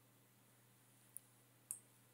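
Near silence: faint room tone with two faint clicks about half a second apart, in the second half.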